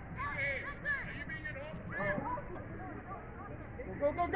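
Several faint shouted calls from players and spectators across an open soccer field, mostly in the first two seconds, over a steady low background hum.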